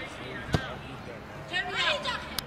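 A single sharp thump about half a second in, with raised voices calling out toward the end.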